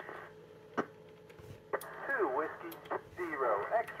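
Amateur radio voices coming through the International Space Station's FM repeater and heard on a transceiver's speaker, thin with the highs cut off. The first second and a half is quieter, with a single click about a second in, then a station's voice comes in.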